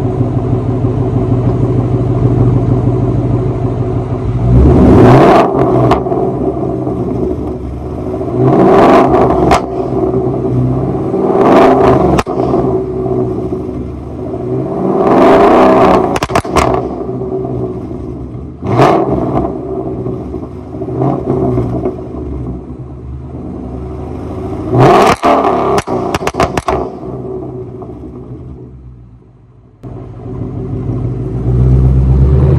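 Ford Mustang GT's V8, running a burble tune through an X-pipe with the mufflers deleted, idling and revved about six times. Each rev falls back with crackling pops and bangs in the exhaust; the biggest burst of pops comes after the last rev.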